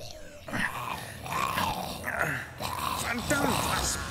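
Zombie growls in an audio drama: several guttural, voice-like growls one after another, starting about half a second in.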